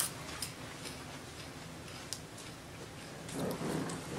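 Quiet room noise with a few faint ticks, then a soft rustling about three seconds in.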